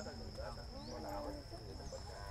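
Faint background chatter of people talking at a distance, several voices overlapping, with a thin, steady high-pitched tone running under it.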